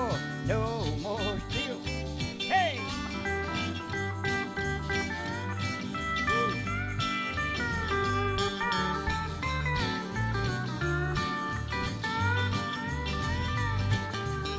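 Country-gospel band playing an instrumental break led by a pedal steel guitar with sliding, bending notes, over bass and guitars keeping a steady beat.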